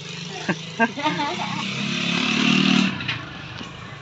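A small engine running, building over about two seconds and dropping away about three seconds in.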